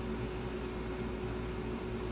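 Steady background hum and hiss of room tone, with one faint unchanging tone running through it.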